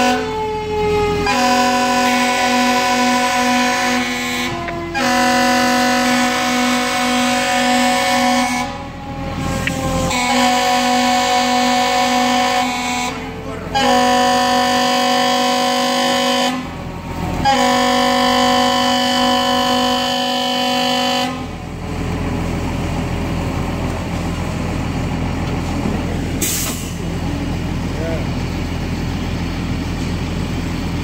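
Fire apparatus air horns sounding about five long blasts of three to four seconds each, separated by short gaps: the fireground signal for firefighters to evacuate the burning building. Through the first nine seconds a siren winds down, falling steadily in pitch. After the horns stop, a steady rumble remains.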